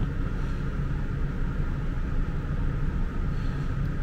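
Steady low background rumble with a faint steady hum, unchanging throughout.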